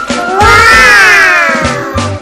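Children exclaiming a long, drawn-out "wooow" in amazement, rising then slowly falling in pitch, over background music.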